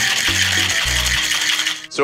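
Ice rattling inside a metal cocktail shaker as it is shaken, stopping just before the end. Background music with a bass line runs underneath.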